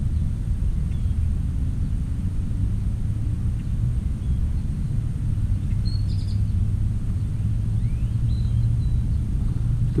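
Steady low outdoor rumble with a few faint, short bird chirps about six seconds in and again near the end.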